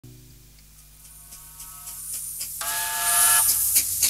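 Steam train effect: rhythmic chuffing, about five puffs a second, growing steadily louder as the engine approaches. A steam whistle sounds for under a second a little past halfway.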